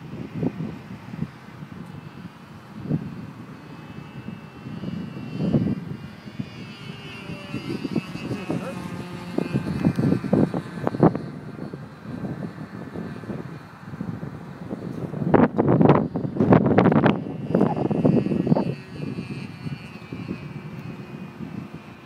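Distant engine of a radio-controlled model airplane, a thin whine that drifts up and down in pitch as the plane passes overhead. Wind buffeting the microphone gives irregular rumbles over it, loudest for a few seconds past the middle.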